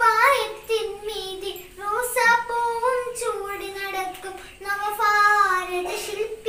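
A young girl singing a Malayalam Children's Day song about Nehru, one voice with no accompaniment heard, holding some notes long.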